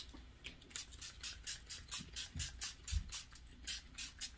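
Makeup setting spray pumped onto the face over and over: quiet short hisses of fine mist, about four a second.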